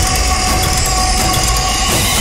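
Dramatic background score: a dense, loud wash of sound with a heavy low rumble and a few held high tones, running steadily without a break.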